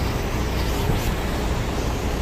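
Steady low rumble of vehicle engines and traffic.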